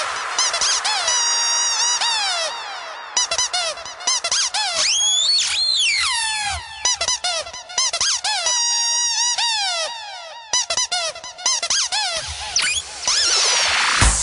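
Breakdown of an electro-house track built from rapid squeaky rubber-duck-toy samples, many short squeaks mostly falling in pitch, with no bass or kick drum. A swell rises near the end as the beat is about to return.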